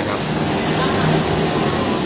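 Steady low hum over background noise, after a man's brief closing word at the start.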